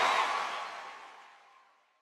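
The closing soundtrack, a busy mix without clear words, fades out steadily to silence over about two seconds.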